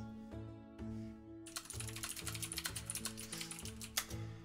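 Typing on a computer keyboard: a quick, dense run of key clicks starting about a second and a half in, over soft background music with a slow bass line.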